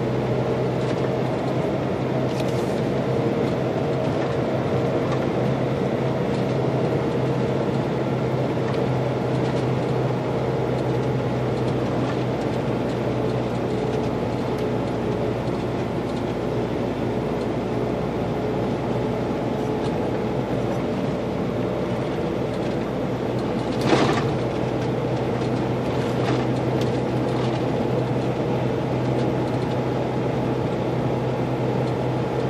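Cab interior of a Volvo FH16 660 truck cruising steadily: its 16-litre six-cylinder diesel and road noise make a constant hum. A single sharp knock comes about three-quarters of the way through.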